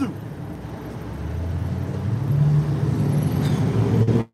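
Road traffic: a passing vehicle's low engine rumble, growing louder about halfway through and staying loud to the end.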